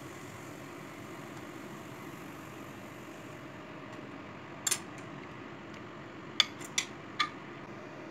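Kitchen utensils clicking sharply against a nonstick egg pan and a glass dish as fried patties are moved: a double click just under five seconds in, then three quick clicks about half a second apart near the end. A steady low hum runs underneath.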